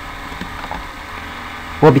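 A pause in speech filled with a faint, steady background hum and hiss from the recording. Speech resumes near the end.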